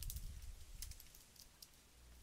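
Faint keystrokes on a computer keyboard, a few separate taps mostly in the first second as a search term is typed.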